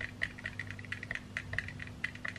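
A stirrer clicking and scraping against the inside of a small plastic tub of melted wax as dye is mixed in: quick, irregular light clicks, several a second.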